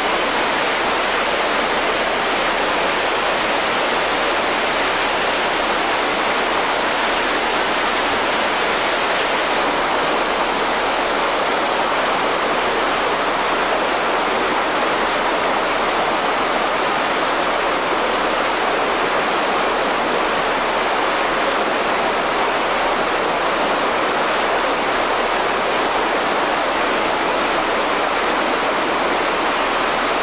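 Steady rushing water: a creek running over rapids and water spilling down the stepped concrete weirs of a fish ladder, an even, unbroken roar.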